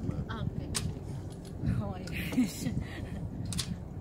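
Short snatches of a person's voice over a steady low rumble, with two sharp clicks, one near the start and one near the end.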